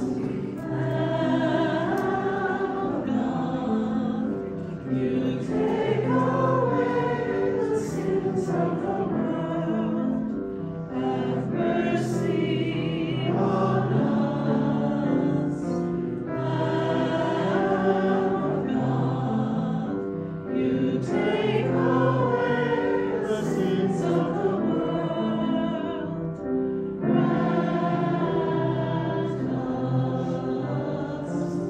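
A choir singing a slow sacred piece, phrase by phrase, with brief pauses about every five seconds.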